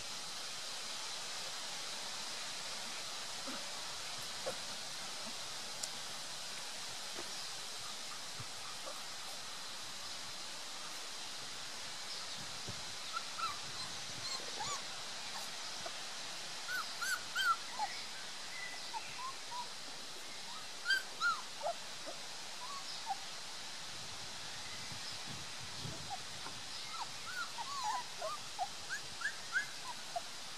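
Three-week-old Beauceron puppies giving short, high whimpers and squeaks, in scattered clusters from about halfway through, over a steady outdoor hiss.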